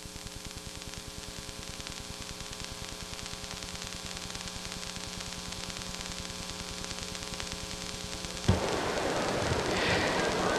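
Steady hiss and electrical hum on the recording. About eight and a half seconds in, a louder rush of noise takes over.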